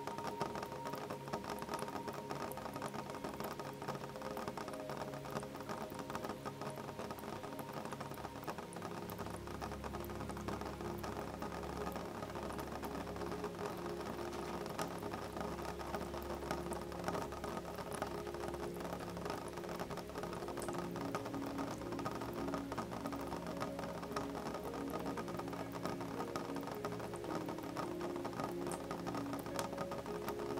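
Rain pattering on a window glass in a dense, steady stream of fine drop ticks, over soft calm music of sustained notes. A low bass note comes in about nine seconds in.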